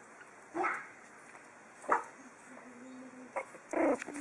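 Pug puppy giving a few short yips, spaced about a second apart, the last ones near the end the loudest.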